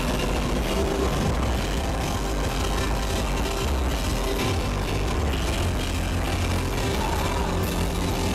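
Live rock band playing loud through a PA system, electric bass and drum kit filling the low end in a dense, steady wash of sound.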